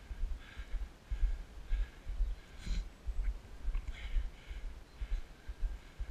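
Wind buffeting the microphone in uneven low gusts while moving along the lane, with a few faint, short breathy sounds above it.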